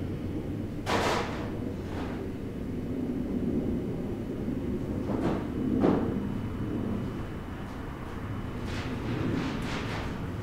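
Workshop background with a steady low hum, broken by several short knocks and thuds from someone moving about off camera, the loudest about six seconds in.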